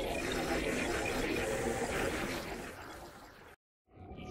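Arturia Pigments synthesizer playing the granular 'Microbots' texture preset: a dense, grainy, sample-based texture that fades away about three seconds in and cuts to silence just before the end.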